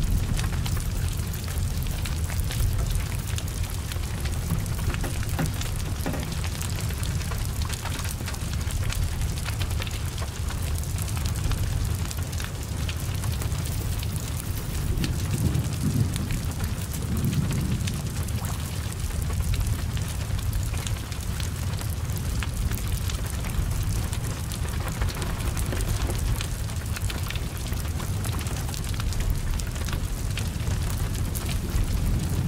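Heavy rain falling steadily over the low rumble of a burning car's fire, with scattered sharp crackles and ticks throughout. The rumble swells briefly about halfway through.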